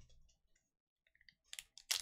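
Foil trading-card pack being handled: quiet at first, then a few sharp crinkling clicks of the foil wrapper in the last half second, the loudest just before the end.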